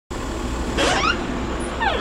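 Front door being opened: two short squeaky creaks, the first rising in pitch about a second in and the second falling as the door swings open, over a steady low rumble.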